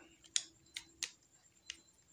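Four small, sharp clicks as the folding tripod legs in the handle of an L08 phone gimbal stabilizer are pulled open, the last a little apart from the first three.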